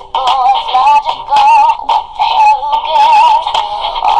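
A high-pitched sung melody over music, the voice wavering with vibrato, in short phrases separated by brief breaks.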